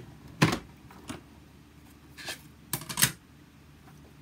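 Hand-cranked die-cutting and embossing machine running a plate stack with a 3D embossing folder through its rollers, with a few sharp clunks and knocks: a loud one about half a second in and a cluster near the end as the plates come out the far side and are handled.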